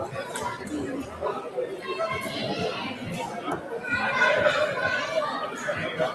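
Chatter of several voices in a large hall, with a dart landing in the bristle dartboard once partway through.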